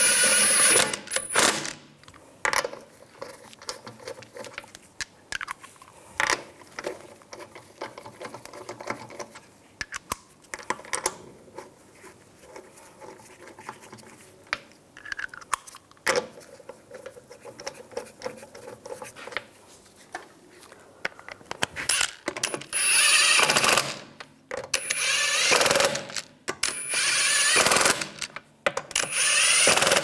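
Metabo cordless impact wrench running wheel lug bolts in snug: one burst at the start, then scattered clicks and clatter of the socket being moved between bolts, then three more bursts of a second or two each near the end.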